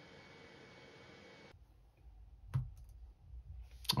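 Faint room tone with a single sharp click a little past halfway, then a few faint low knocks just before the end.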